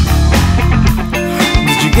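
Progressive rock band music, loud and dense, with guitar prominent.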